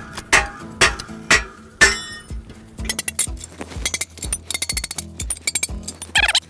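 A hammer knocks the steel wedges out of a fence stretcher bar: sharp metallic knocks about two a second, one with a ringing clink. Around the middle comes a quick run of lighter metal clinks and rattles, all over background music with a steady beat.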